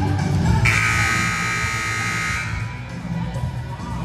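Gymnasium scoreboard buzzer sounding once for just under two seconds, starting a little under a second in and cutting off sharply. Music plays underneath.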